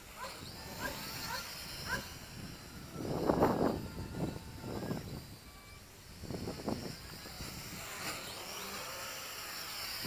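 MJX X400 mini quadcopter's motors and propellers whining, changing pitch with the throttle as it flips. The whine rises in pitch toward the end as the drone comes in close. Two louder, short bursts of some other sound break in about three and six and a half seconds in.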